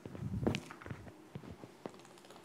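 Footsteps on a hard floor mixed with handling noises: papers rustling and a plastic water bottle being picked up, loudest about half a second in, then a few separate clicks and knocks.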